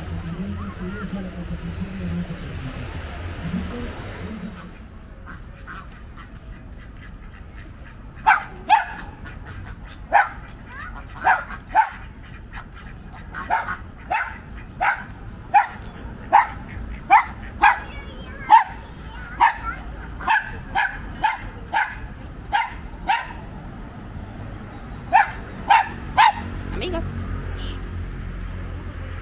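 Domestic white ducks quacking. A long series of short, loud calls, some in quick pairs, begins about eight seconds in. The first few seconds hold a steady surf-and-wind hiss from the beach.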